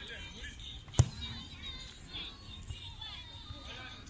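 A single loud thud of a football being struck about a second in, over high-pitched children's voices shouting across the pitch.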